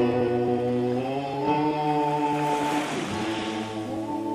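Male voices singing long held notes together in harmony over an acoustic guitar, the chord shifting about a second in and again near the end.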